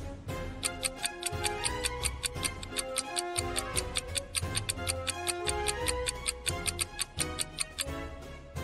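Light background music over a fast, steady clock-like ticking, several ticks a second: a countdown-timer sound effect.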